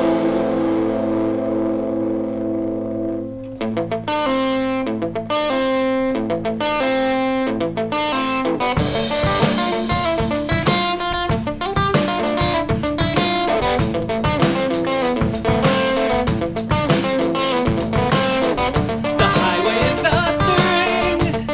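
Electric guitar through an amp with a drum kit. A held chord rings out and fades, then about three seconds in the guitar alone starts a picked figure as the song changes from 6/8 to 4/4. The drums come back in with a steady beat about nine seconds in.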